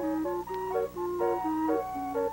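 Steam calliope playing a tune, its brass steam whistles sounding short pitched notes that change several times a second.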